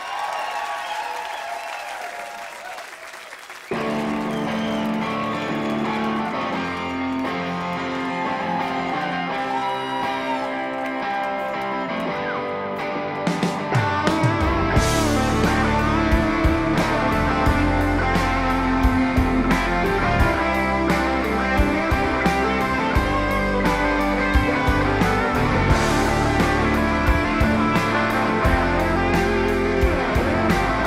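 Crowd noise fading, then about four seconds in electric guitars start a rock song's intro; about fourteen seconds in the drums and bass come in and the full band plays on, louder.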